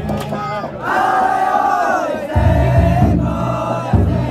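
A group of young men shouting together at a festival float. The shout rises and is held for over a second before falling away. A low steady drone runs underneath, dropping out early and coming back about halfway through.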